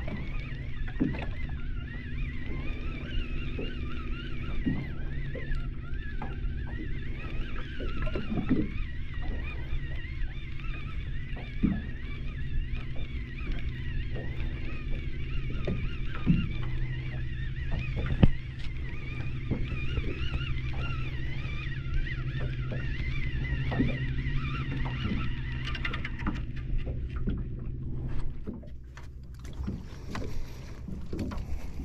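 Shimano Ocea Conquest baitcasting reel being cranked steadily, its gears giving a wavering whine, over a steady low hum. There are a few knocks, the loudest about two thirds of the way in, and the winding stops a few seconds before the end as the fish comes up.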